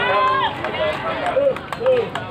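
Voices of several people talking and calling out in short bursts near a football stand, with a few sharp clicks among them.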